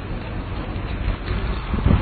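Wind rumbling on a handheld phone's microphone outdoors, a steady low noisy rush, with a stronger low bump near the end.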